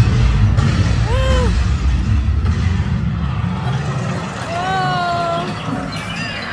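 Dark-ride car running along its track with a steady low rumble. Brief voice-like arched calls sound over it about a second in and again, longer and slightly falling, near the end.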